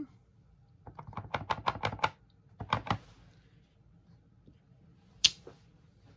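A stamp being tapped quickly on an ink pad and stamped onto cardstock: a fast run of about ten light taps lasting about a second, a few more taps a moment later, and a single sharp click near the end.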